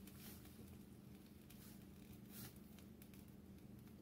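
Near silence: room tone with a faint low hum and a few faint soft clicks.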